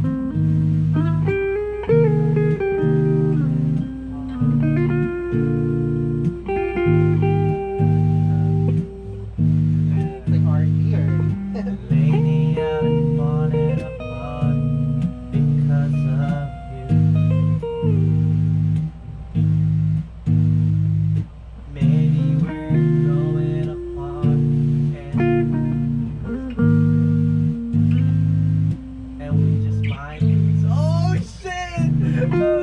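An electric guitar and an electric bass guitar playing together in a small room. Melodic guitar lines run over a bass part of held low notes, each broken off by short gaps.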